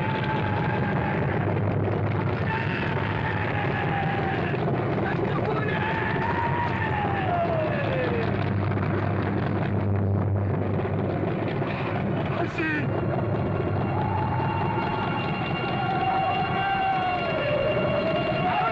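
Aircraft engines running with a steady low drone and a whine that rises and falls in pitch several times. About two-thirds of the way through comes a brief click, after which a higher steady whine joins.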